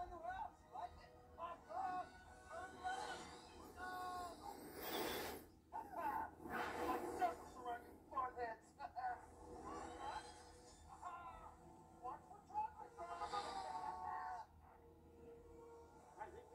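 The ride film's soundtrack played from a television: male voices calling out dialogue over music, with several whooshing sound-effect swells, the loudest about seven seconds in.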